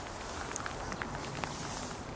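Moose moving through low brush: scattered light crackles and rustles of vegetation underfoot, over a steady outdoor hiss.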